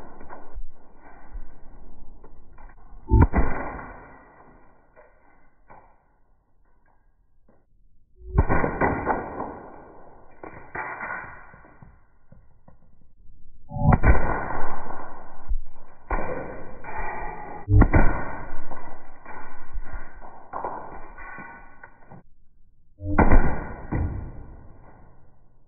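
Shots from a .68-calibre Umarex HDR 68 air revolver and their hits on a melon. There are five sharp reports, roughly four to six seconds apart, each trailing off over a second or two.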